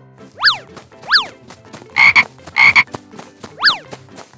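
Frog croaking sound effects: five croaks in quick succession, three short chirps that swoop up and back down in pitch, with two flatter, buzzier croaks between them.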